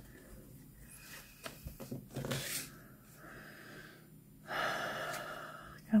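Faint rustling of a paper gift tag and thread as the thread is worked through a small punched hole, then a breathy exhale lasting about a second near the end.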